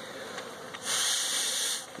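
One puff from a beekeeper's bellows smoker: a steady hiss of air and smoke lasting about a second, blown across the frames to drive the bees down.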